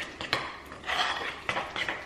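Spoon clinking and scraping against a bowl as porridge is stirred, with a few sharp clinks among the scraping.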